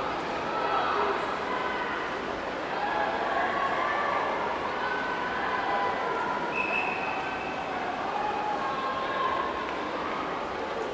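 Crowd of teammates and spectators shouting and cheering on swimmers during a backstroke race, many voices overlapping without a break, in an indoor pool hall.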